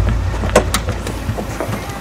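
A low rumble fading away, with two sharp clicks a little after half a second in as a car's hatchback tailgate is unlatched and swung up.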